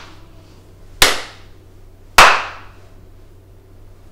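A person clapping slowly, two single hand claps a little over a second apart, each with a short echo.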